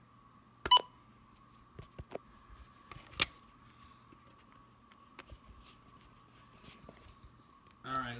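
Weather alert radio giving one short electronic key beep about a second in as a button is pressed, followed by several plastic button clicks. A faint steady tone runs underneath.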